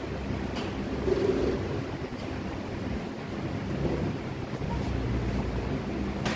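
Steady classroom room noise: a continuous low rumble and hiss with a few faint clicks.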